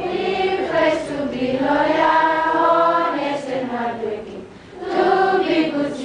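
A large assembly of school students singing the school anthem together as a choir, holding long notes; the singing drops off briefly about four and a half seconds in for a breath, then the next phrase begins.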